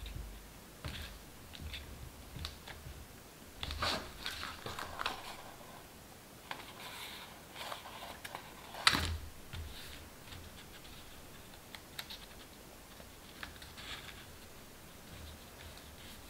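Cardstock papercraft being handled and pressed flat on a cutting mat: scattered light taps, clicks and paper rustles, with one sharper tap about nine seconds in.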